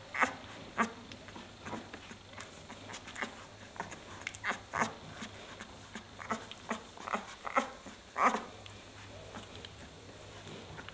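Newborn Leonberger puppies making short squeaks and whimpers, scattered irregularly, with the loudest just past eight seconds in.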